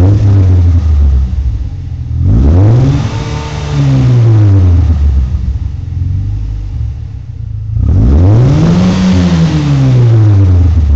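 A Mazda 6's 2.0-litre four-cylinder engine revving through a Flowmaster Super 44 muffler. At the start the revs fall back to idle. Then come two throttle blips, one about two seconds in and one near the end, each climbing and settling back down to idle.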